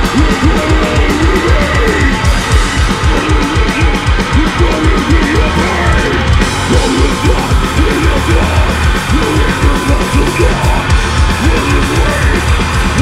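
Death metal band playing live at full volume: heavily distorted guitars over fast drumming, with a rapid, even kick-drum pulse.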